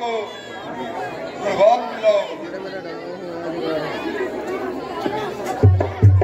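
A chatter of people's voices talking. Near the end a drum starts beating in strong, low, even strokes.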